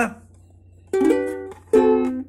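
Two chords played on a plucked string instrument, one about a second in and one near the end, each ringing out briefly.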